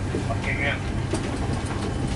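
Steady low cabin hum aboard an Airbus A330-300, with faint voices and a light click.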